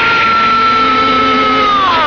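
A man's long anguished scream held on one high pitch, bending down in pitch near the end, over background film music.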